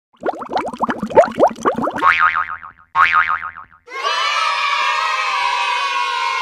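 Cartoon intro sound effects: a quick run of short rising squeaky chirps, then two wobbly boing tones, then a held shimmering chord from about four seconds in.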